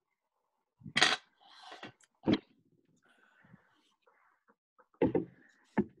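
Men exhaling after swigs of sour beer: a few short, loud breathy sounds, the first about a second in and the last ones near the end.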